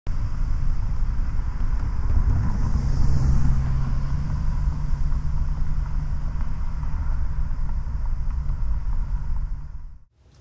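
Steady low rumble like road traffic, with a low hum that holds for a few seconds in the middle; it fades out at the end.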